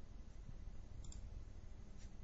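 A single computer mouse click about a second in, over a faint low background hum.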